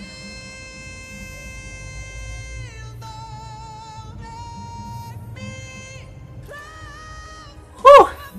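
A male vocalist's high sustained notes in a power ballad, played back through speakers: one long held note, then several higher held notes with vibrato. Near the end comes a brief, much louder vocal cry, with pitch rising then falling.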